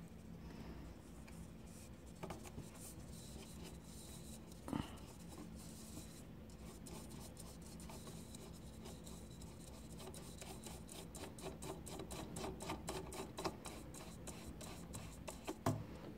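Faint scratching and small clicks of an LED bulb being handled and screwed into a table lamp's socket, the ticks coming quicker and closer together toward the end, with one brief louder sound about five seconds in.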